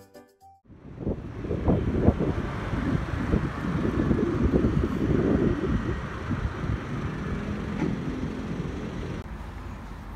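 Background music breaks off at the start. About a second in, a low, gusty rumble like wind buffeting the microphone begins; it is loudest in the middle and eases near the end.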